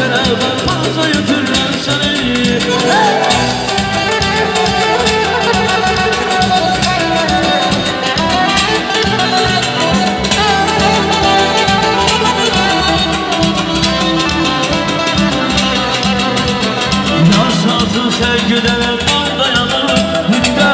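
Live amplified Azerbaijani wedding-band music: an electric guitar plays a bending, ornamented melody over a frame-drum rhythm and a synthesizer keyboard, through PA speakers. It plays steadily with no break.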